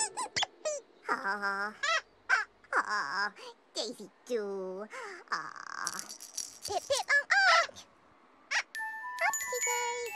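Two costumed children's-TV characters making squeaky, sing-song wordless vocal sounds in short, wavering phrases. Light chime-like musical tones come in near the end.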